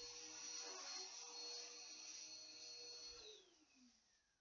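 A small motor humming steadily, then cutting out about three seconds in, its pitch falling as it winds down to silence.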